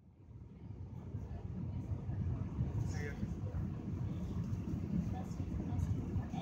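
Airliner cabin noise on the landing approach: a steady low rumble of the engines and airflow, fading in over the first second.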